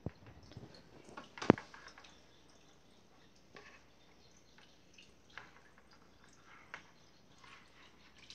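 Small splashes and drips of water in a plastic bucket as an aquarium fish net is worked through it to catch fish, with a sharp knock about one and a half seconds in.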